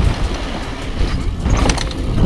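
Mountain bike rolling fast down a dry dirt singletrack, heard from a camera on the bike or rider: a steady low wind rumble on the microphone over tyre noise, with scattered rattling clicks from the bike, busiest near the end.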